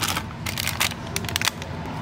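Plastic snack wrappers crinkling as a hand rummages through a basket of individually wrapped snack packets, giving an irregular run of crackles and ticks.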